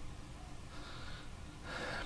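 Quiet room tone with a man's faint breaths into a microphone, ending in an intake of breath just before he speaks.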